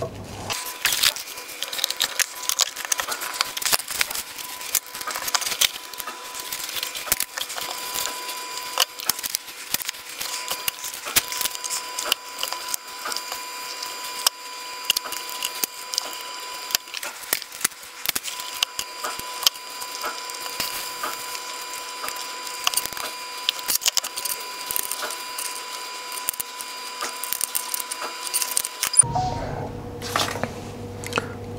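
Many quick small clicks and taps of wire leads and plastic connector terminals being handled and plugged into a car body control module's connector pins, over a faint steady high-pitched whine.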